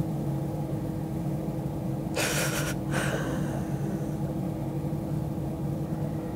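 A woman crying, drawing a sharp sniffling breath about two seconds in and a shorter one a second later, over a steady low hum.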